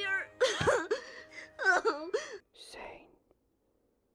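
A cartoon boy's voice sobbing and wailing in several wavering, broken cries, which stop a little over three seconds in.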